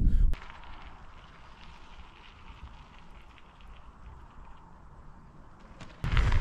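Bicycle tyres rolling down a gravel trail: a faint, steady hiss.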